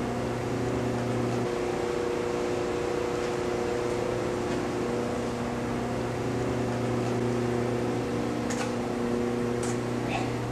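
A steady machine hum made of several fixed low tones over an even noise, like a motor or fan running. The lowest tone drops out about a second and a half in. A couple of faint clicks come near the end.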